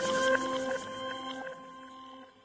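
The fading tail of an electronic transition sound: a few steady held tones that die away gradually.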